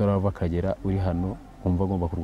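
A man speaking in short phrases, in a language other than English.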